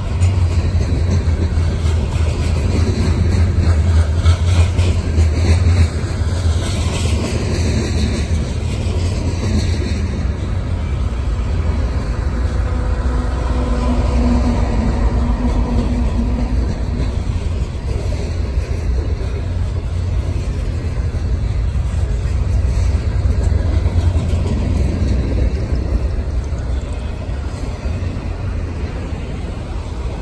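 Freight cars of a long manifest train rolling slowly past on the rails: a steady deep rumble of wheels and cars, heaviest in the first six seconds.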